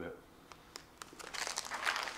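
A plastic cat-treat pouch crinkling as it is handled, starting about halfway through with small crackles and clicks.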